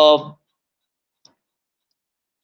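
A man's drawn-out 'uh' trails off in the first moment, followed by near silence with one faint click about a second in.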